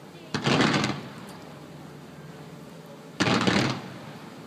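Firework comet volleys: two short rapid salvos of shots, each lasting about half a second, about three seconds apart.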